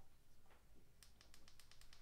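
A quick run of faint, evenly spaced clicks, about eight in a second, starting about halfway in: a shop light's control being clicked through its brightness settings.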